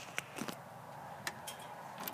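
A few faint, separate clicks from a door handle and lock being handled.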